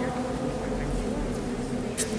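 A steady drone of several held low tones in a large stone church interior.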